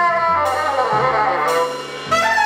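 Jazz quartet of bassoon, alto saxophone, double bass and drums playing together, the reeds' lines sliding in pitch over low bass notes, with a cymbal splash about half a second in. The sound thins briefly near the end.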